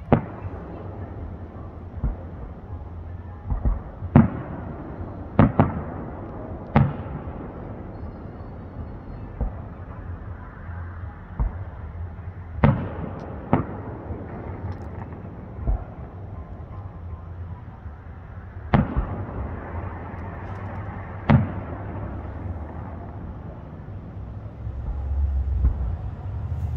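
Aerial fireworks heard from a distance: about a dozen sharp bangs at irregular intervals, some in quick pairs, each trailing off with a short echo, over a low background rumble.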